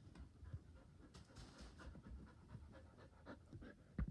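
Border Collie panting faintly, quick short breaths about three to four a second, with a low bump at the very end.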